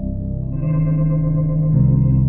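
A sampled, heavily processed guitar pad from 8Dio Emotional Guitars Pads (Grief patch) plays sustained chords from a keyboard. New notes come in about half a second in, and the chord changes near the end.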